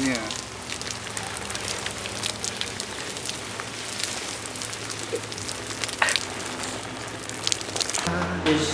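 Water spraying and pattering down like rain, a steady hiss dotted with sharp drop crackles.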